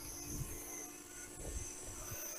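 Faint, steady hum of a 7-inch FPV quadcopter's Foxeer Datura 2806.5 motors and propellers hovering in place in position-hold mode, several steady tones held without change.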